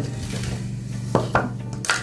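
A plastic hair-dye mixing bowl and a mixing spoon knocking and clinking lightly as they are handled on a counter, with three short clicks in the second half.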